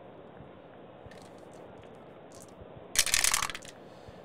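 Strat-O-Matic game dice rolled into a dice tray: a few faint clicks as they are handled, then a short clatter about three seconds in lasting about half a second.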